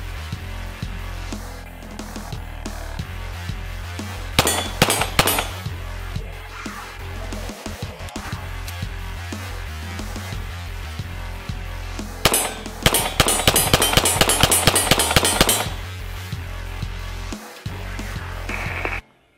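Background music with a steady beat, over which a Beretta M9 9mm pistol fires: a few quick shots about four seconds in, then a long rapid string of shots from about twelve to fifteen and a half seconds.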